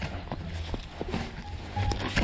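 Footsteps walking over dry grassy ground: a handful of soft, irregular steps.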